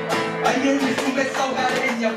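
Live Argentine folk music: a nylon-string guitar is strummed in strong strokes, and a man's singing voice comes in about half a second in.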